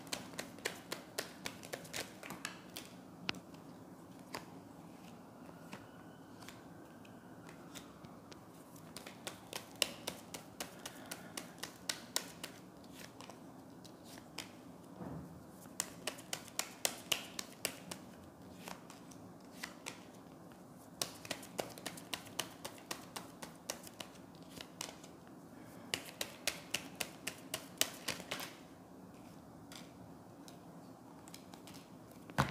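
A tarot deck being shuffled by hand and cards laid out on a hard countertop: runs of quick, crisp card clicks in bursts, with short pauses between them.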